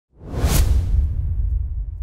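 Whoosh sound effect over a deep rumble: the swish swells quickly, peaks about half a second in and fades away by a second and a half while the rumble continues.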